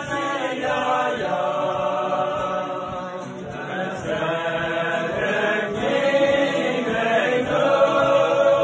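A group of men singing a melody together in chorus, growing louder in the second half.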